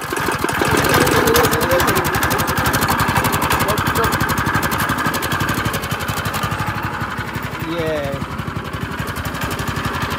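Small single-cylinder gasoline engine on a plate compactor, just pull-started, catching and building up over the first second, then running steadily with a rapid, even firing beat.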